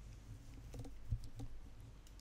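A few faint, short taps and clicks over a low steady hum, the small handling noises of a quiet desk recording.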